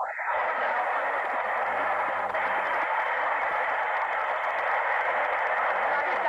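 Soundtrack of a 1930s black-and-white film clip played over a video call: a steady, thin hiss-like noise squeezed into a narrow middle range, with faint tones beneath it.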